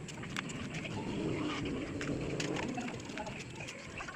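A bird cooing, one low, drawn-out call through the middle, with small ticks scattered around it.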